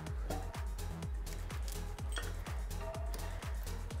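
Background music with a steady beat, about two beats a second.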